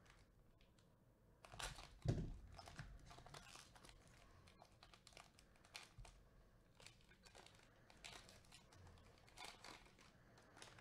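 Foil wrapper of a Panini Donruss basketball card pack being torn open and peeled back by hand: faint crinkling and crackling, loudest about two seconds in.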